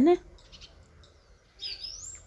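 A small bird chirps briefly near the end: one short, high, rising call over quiet room tone.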